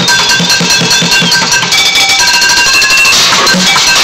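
Bucket drumming on plastic five-gallon buckets and pans: a steady beat of low bucket hits, with high ringing tones held over it that change pitch every second or so.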